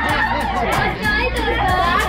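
Laughter and overlapping chatter from a few people over background music with a steady beat and a held bass.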